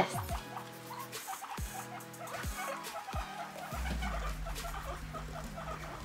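Background music with a deep bass, over which guinea pigs make many short, soft calls.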